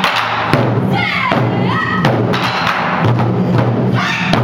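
Taiko ensemble playing: several players strike barrel-shaped nagado-daiko drums with wooden bachi sticks in a steady, dense rhythm, the drum heads ringing low between strokes.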